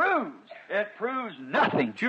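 Speech only: a voice preaching, its pitch arching up and down on each syllable.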